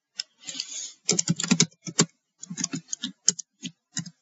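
Computer keyboard being typed on: quick runs of keystrokes with short pauses between them.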